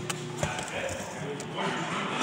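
Quiet handling noise from a power probe and a hand-held camera being moved about, with a single sharp click about half a second in.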